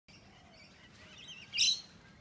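Birds singing: faint warbling chirps from about a second in, then a short loud burst of calls near the end.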